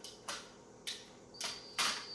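Handling of a Meade DS114 telescope's battery pack switch and hand controller as it is switched on: four short clicks and scuffs, the last the loudest. Near the end a thin high electronic tone sounds for about a second as the telescope powers up.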